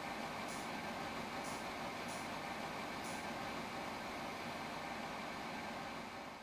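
Steady rushing hiss of air from a Dyson Pure Hot + Cool purifying fan heater running.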